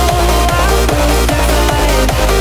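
Electronic dance music with a heavy bass and a steady beat of about three beats a second.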